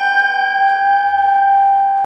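A loud, steady ringing drone with a stack of bright overtones, held unchanged in an electronic sound-collage track. A few soft low throbs pulse underneath in its second half.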